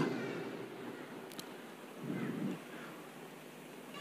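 A pause in a speech over a PA system: the last word's echo dies away in a large hall, leaving low room tone with a faint, brief murmur about two seconds in.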